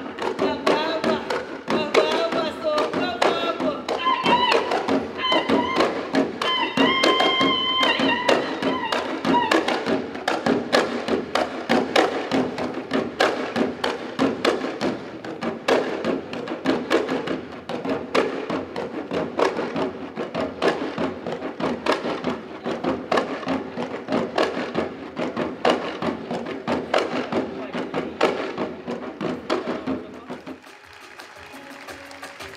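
Live folk drumming on shoulder-slung cylindrical drums, a fast, dense run of strokes throughout. A sung melody rides over the drums for roughly the first nine seconds, after which the drums carry on alone.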